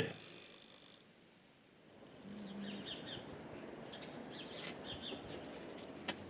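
Faint outdoor ambience with small birds chirping, short repeated calls starting about two and a half seconds in.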